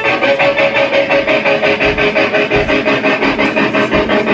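Amplified electric guitar playing a fast, evenly picked riff, about seven or eight notes a second, over held notes in a live rock band.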